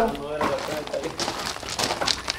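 Several people talking at a distance, with a few light knocks from split firewood logs being handled and moved off a stack.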